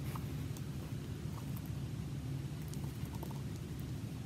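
Steady low hum of room tone with a few faint, scattered small clicks and rustles: cord being handled and pulled through a hole in a cardboard craft piece.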